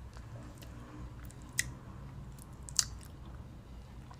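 Faint mouth sounds of someone tasting a drink of kombucha, with a couple of small sharp clicks, over a low steady room hum.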